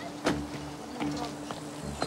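Footsteps on pavement, a few steps about half a second apart, the first the loudest. Under them runs a low insect buzz that keeps breaking off and starting again.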